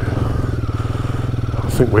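Royal Enfield Guerrilla 450's single-cylinder engine running steadily at low revs as the bike rolls along slowly, heard from the rider's seat.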